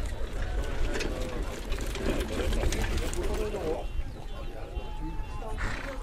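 Indistinct voices of people talking close by, over a low rumble of wind on the microphone.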